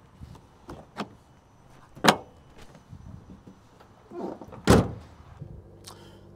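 A few light clicks, then a sharp knock about two seconds in and a heavier, deeper thunk near the end: the handling and shutting of a 2024 Chevrolet Colorado pickup's door.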